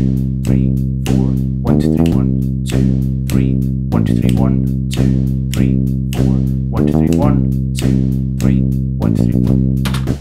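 MIDI-sequenced drum beat and bass line played back from a DAW in an odd time signature (19/16 and 15/16): kick and hi-hats grouped in threes over a held bass line, with hits about every half second.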